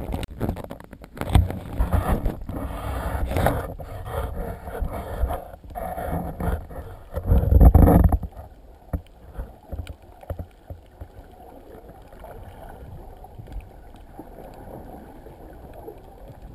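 Sea water splashing and sloshing against a waterproof camera at the surface, in loud irregular bursts with the biggest splash about eight seconds in. Then the camera goes fully under and there is only a quieter, steady, muffled underwater hiss.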